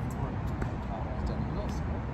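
Steady low outdoor background rumble with a few faint, light ticks.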